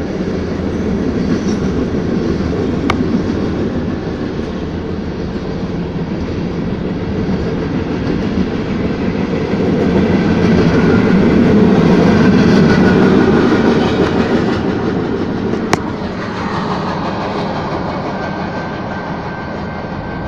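Norfolk Southern freight train's cars rolling through a grade crossing, heard from inside a car: a loud, steady rumble of wheels on rail that swells about ten seconds in and eases off near the end. Two sharp clicks cut through it, one early and one about three-quarters of the way in.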